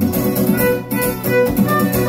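Violin playing a melodic line over a strummed electric guitar: an instrumental passage of a song with no singing.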